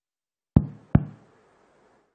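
Two sharp knocks about half a second apart, each followed by a short room echo.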